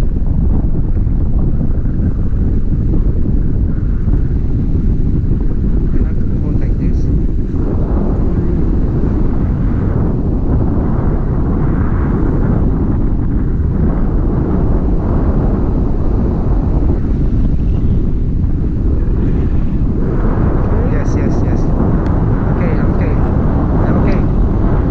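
Wind rushing over the microphone of an action camera in flight under a tandem paraglider: a loud, steady low rumble, with stronger swells now and then from about eight seconds in.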